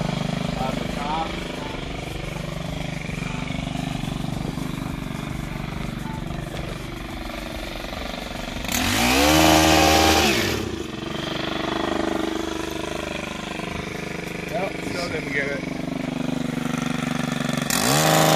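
Stihl KM 130 KombiMotor running a pole hedge trimmer attachment at low throttle, revved up hard once about nine seconds in for a couple of seconds, the pitch rising and then falling back, and revved again at the very end.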